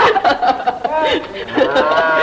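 Men's voices talking, mixed with chuckling laughter.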